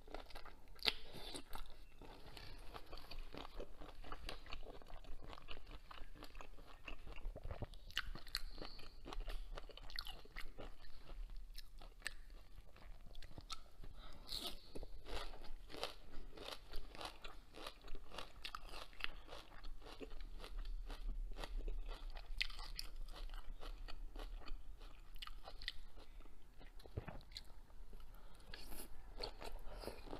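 Close-miked chewing of shell-on shrimp, with crisp, irregular crunches and crackles as the shells break between the teeth.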